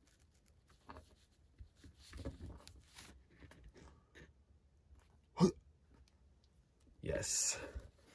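Faint handling noise of a plastic action figure and its staff accessory being posed, with light clicks and rubbing. About five and a half seconds in comes a brief, sharp vocal sound from the person, and near the end a short breathy burst.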